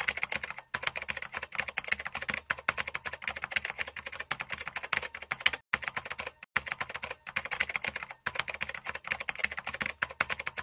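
Computer-keyboard typing sound effect: a fast, continuous run of key clicks with a few brief pauses, accompanying text being typed out on screen.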